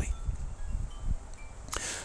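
Chimes ringing a few scattered single notes at different pitches, over a low rumble.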